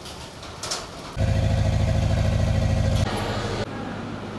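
Enclosed standby generator set running: a loud, steady low engine drone that starts abruptly about a second in, steps down about three seconds in and falls away shortly after.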